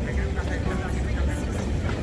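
Busy city street ambience: a steady low traffic rumble with faint voices.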